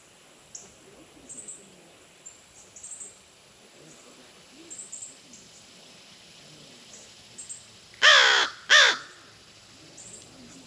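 A crow gives two harsh caws in quick succession near the end, the second shorter than the first. Faint high chirps sound on and off before them.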